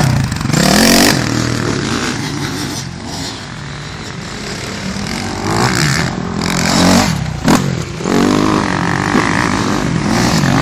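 Motocross dirt bike engines revving on the track. One bike passes close at the start, the sound eases off for a couple of seconds, and then engines rev hard again with pitch climbing and dropping repeatedly as the riders work the throttle and shift.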